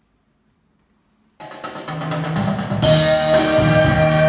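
A 1965 northern soul record playing on a turntable: after a moment of silence, drums and band come in suddenly about a second and a half in, and the full arrangement with cymbals reaches full level about three seconds in.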